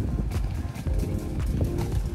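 Background music over the low rumble of freeskate wheels rolling on a concrete sidewalk, with irregular clicks as the wheels cross the pavement.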